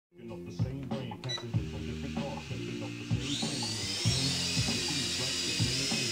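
JXD 509G toy quadcopter's motors spinning up about three seconds in with a rising high whine, then holding a steady whine as it lifts off and hovers. Music with a steady beat plays throughout.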